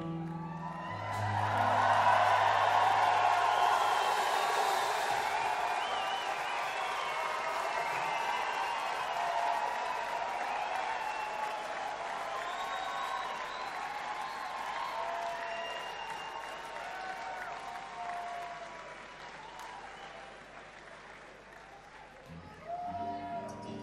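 A theatre audience applauding and cheering with whistles after a song ends. The applause swells about two seconds in, then slowly dies away toward the end.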